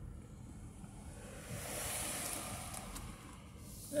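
Low, steady rumble inside a slowly moving car's cabin, with a rushing noise that swells from about a second in and fades again by three and a half seconds.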